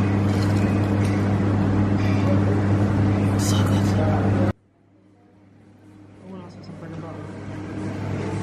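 A steady low hum, cut off suddenly about four and a half seconds in at an edit, after which quieter room sound slowly fades back up.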